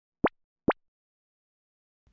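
Two short cartoon 'plop' sound effects, each a quick rising bloop, about half a second apart, from an animated logo intro.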